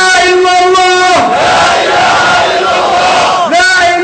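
Protest chanting shouted very loud. The voice holds each long phrase on one high pitch, with short breaks about a second in and again near the end.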